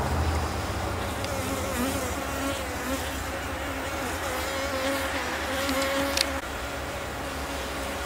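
Honey bees buzzing around an open hive, with a steady, slightly wavering buzz from bees flying close by. A sharp click comes about six seconds in.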